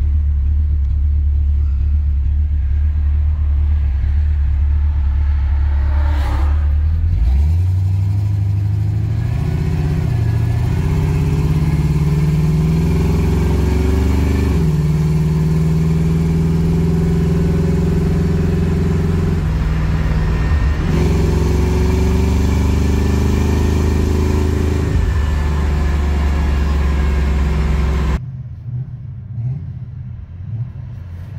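1977 Chevrolet Camaro Z28's V8 engine heard from inside the cabin, pulling away and accelerating: its pitch climbs for several seconds, drops at a shift about halfway, then holds steady at cruise. Near the end it gives way abruptly to a quieter engine and road sound.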